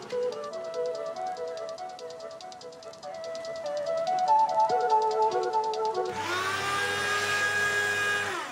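Background music, then about six seconds in an electric strip-cut paper shredder starts up: its motor whine rises quickly to a steady pitch, with the rasp of a sheet of paper being cut into strips.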